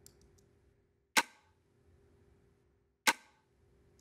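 Layered snap-and-snare hit from a soloed drum group, heard twice about two seconds apart, each a sharp crack with a short tail. It plays through a hard-knee compressor with the ratio turned up to about 14:1, and the snap starts to dull out.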